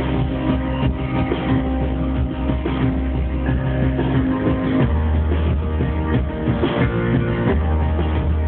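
Live band playing: strummed guitar over bass and drums, the bass notes changing about five seconds in and again near the end.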